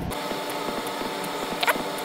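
A steady machine hum with a whine running through it, and a brief rising chirp about three-quarters of the way through.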